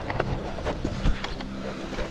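Gravel bike rolling over a rough, rutted sandy dirt track: knobby tyres on loose ground, with the bike rattling in irregular knocks over bumps.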